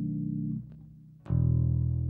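Slow instrumental jazz on guitar and bass. A held low chord dies away about halfway through, there is a brief hush, and then a new low chord is plucked and rings.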